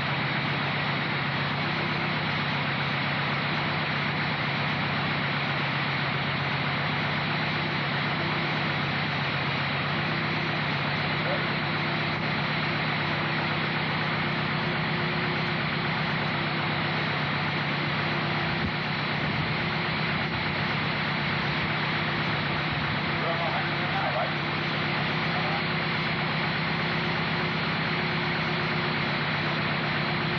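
An engine idling steadily, an even hum that holds the same speed throughout.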